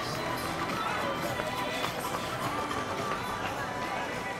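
Street race ambience: runners' footsteps on the pavement, with spectators chattering and faint music, at a steady level throughout.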